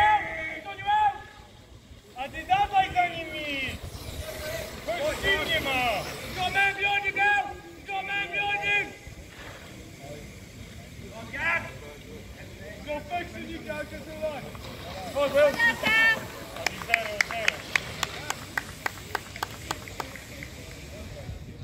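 People's voices calling and shouting in short raised bursts, with no clear words. A quick run of sharp clicks comes near the end.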